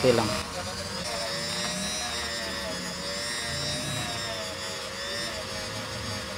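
Handheld electric rotary tool (Ingco mini grinder) running steadily against a brake pad to grind off light rust, giving a steady motor whine.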